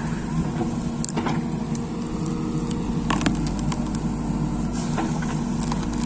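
JCB backhoe loader's diesel engine running steadily under load while the backhoe digs, with a few short clicks and knocks about a second in and again around three seconds in.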